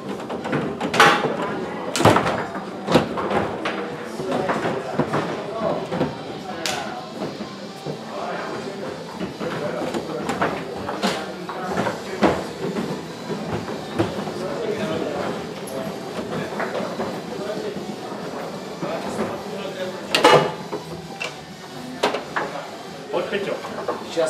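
Foosball being played on a Rosengart table: irregular sharp clacks and knocks of the ball being struck by the plastic figures and hitting the table walls, with the rods knocking, the loudest about one, two and twenty seconds in.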